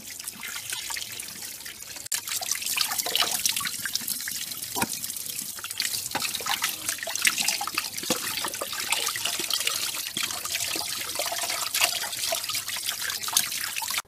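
Water running from a tap and splashing over raw whole chickens as they are rubbed and rinsed by hand, with uneven spattering onto a tray below. It cuts off abruptly at the end.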